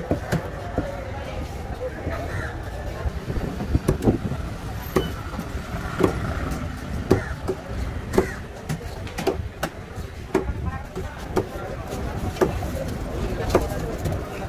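Knife blade cutting through barracuda flesh and knocking on a wooden table, a sharp knock about once a second as the fish is scored, over the chatter of voices.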